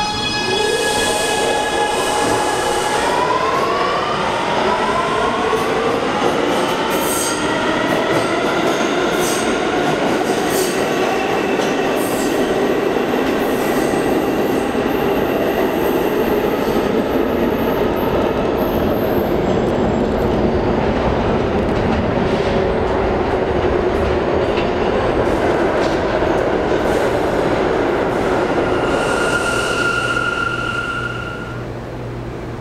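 Kawasaki R211A subway train's propulsion whine as it accelerates away from the platform: a chord of whining tones rises in pitch over the first few seconds and then levels off. Under it is the steady rumble of wheels on rail, with a few sharp clicks.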